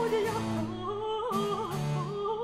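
French Baroque petit motet: a soprano sings an ornamented line with vibrato over a basso continuo that moves in held low notes.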